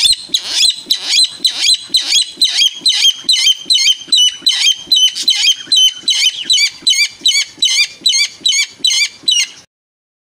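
A caged barred rail (tikling) calling: a long run of loud, harsh, high-pitched notes repeated about three times a second, which cuts off suddenly near the end.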